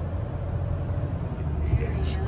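Steady low rumble of a diesel vehicle's engine and road noise heard from inside the cabin while driving slowly.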